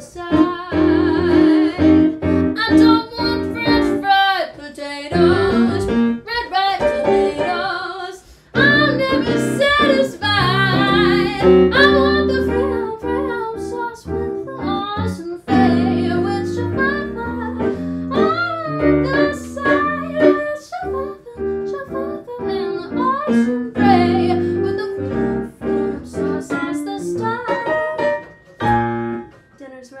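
A woman singing with a digital keyboard accompaniment played with a piano sound, with a brief break about eight seconds in.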